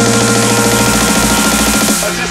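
Electronic dance music with a fast, even pulsing beat; a high swell rises over the first second, and the track changes abruptly right at the end.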